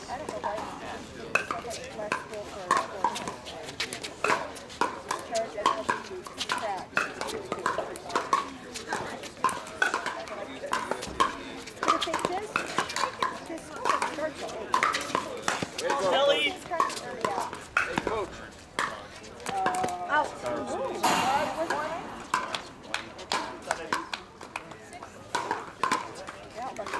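Pickleball rallies: the hollow plastic ball popping sharply off paddles and bouncing on the hard court, many times at irregular intervals.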